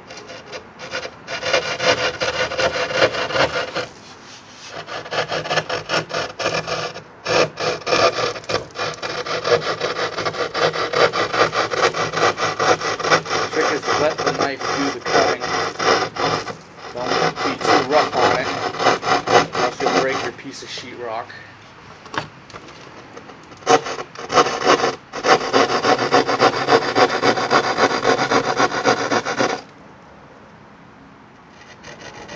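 Serrated drywall jab saw sawing through a sheet of drywall in quick back-and-forth rasping strokes, in several runs broken by short pauses, the longest a few seconds past the middle.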